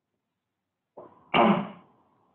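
A single loud cough from a man about a second and a half in, after a quiet start.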